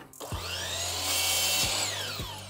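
DeWalt miter saw motor starting with a rising whine and cutting through a wooden board, then a falling whine as the blade begins to spin down near the end.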